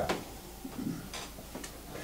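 Quiet room noise with a few faint, scattered clicks, the first right at the start.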